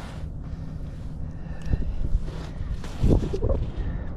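Wind buffeting the microphone as a low rumble, with a stronger gust about three seconds in.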